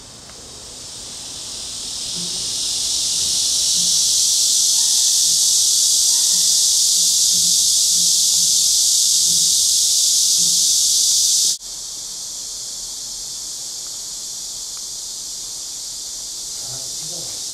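Cicadas buzzing in a loud, high, steady chorus that swells up over the first few seconds. It drops suddenly about three-quarters of the way through to a softer buzz that carries on.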